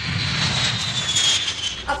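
Four-engine jet airliner flying low: a steady rush of jet engine noise with a high whine that slowly falls in pitch.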